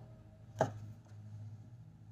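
A single short tap about half a second in, an oracle card being laid down on the table, over a faint steady room hum.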